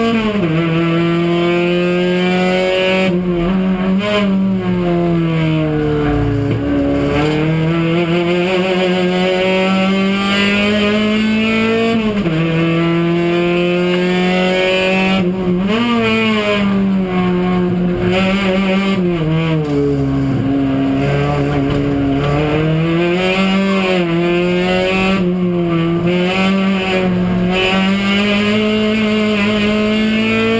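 A Kia one-make race car's engine heard from inside the cabin at racing speed. Its note climbs and falls with throttle and braking, with several sudden steps in pitch at the gear changes.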